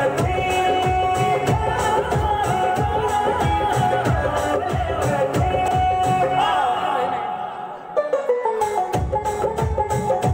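Recorded Indian folk-style dance song with a steady drum beat and a sustained melody line. The beat drops out for about a second and a half near seven seconds, then comes back with a hit about eight seconds in.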